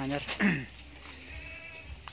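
A bligon goat bleats once, a short call falling in pitch, about half a second in.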